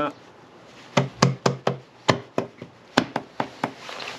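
A hand tapping a motorcycle's clutch-side engine cover home onto the engine case, seating it over its locating dowels and new gasket. About a dozen sharp knocks in three quick runs, starting about a second in.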